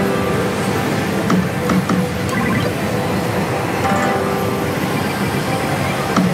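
Pachislot hall din: the music and electronic jingles of many slot machines over a steady roar, with a few short clicks.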